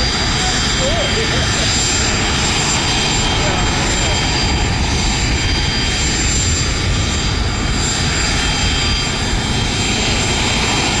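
Helicopter turbine engine running at a steady pitch on the ground: a high whine over a dense low rumble, with no rise or fall in speed.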